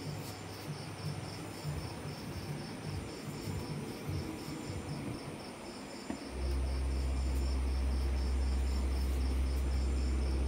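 A cricket chirping in a fast, even rhythm. There are irregular low knocks during the first six seconds. About six seconds in, a steady low hum starts and becomes the loudest sound.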